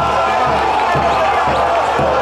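Football supporters chanting in unison to a drum beaten about twice a second, cheering a goal.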